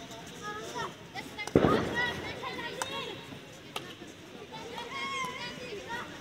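A field hockey stick striking the ball once, hard, about one and a half seconds in: a loud sharp crack with a short ring. Players' calls and shouts go on around it.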